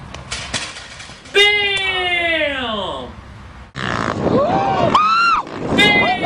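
Loud yelling with no words: a long cry that falls in pitch starts about a second and a half in, then more shouts and cries over a rushing noise in the second half.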